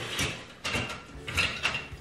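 Dishes and kitchenware knocking and clinking as they are handled at the counter: a few separate clatters, one with a brief ringing note.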